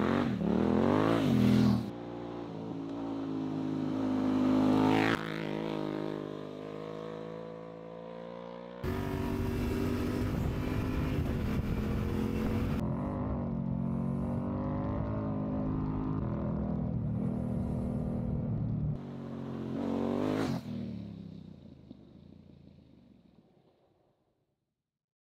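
Yamaha Ténéré 700 parallel-twin engine, on a build made louder, being ridden and revved on a dirt track, its note rising and falling. From about a third of the way in it runs more steadily with wind rush on the microphone for a few seconds. Near the end one more rev rises sharply and fades away as the bike passes.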